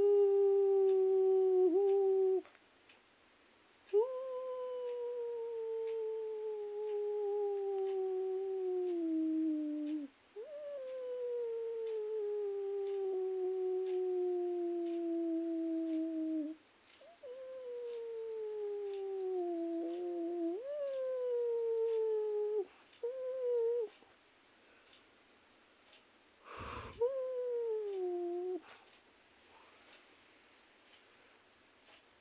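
A dog howling: a string of long, drawn-out howls, each sliding slowly down in pitch, with short breaks between them. A faint, fast high trill runs underneath from about a third of the way in, and a single knock comes just before the last howl.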